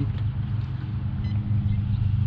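A fishing boat's motor running with a steady low hum, with a brief faint ticking partway through.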